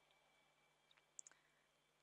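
Near silence: room tone, with a few faint clicks about a second in.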